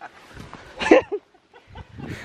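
A short, pitched vocal sound about a second in, followed by a smaller one, over faint rustling of feet climbing a leafy forest slope.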